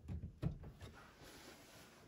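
Faint knocks: one right at the start and a slightly louder one about half a second in, then only a low, quiet background.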